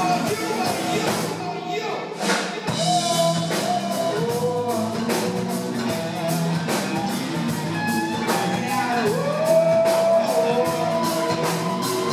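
Live rock band playing: drum kit, electric guitars, bass and a held melody line that bends in pitch over the beat, with a fuller low end coming in about two and a half seconds in.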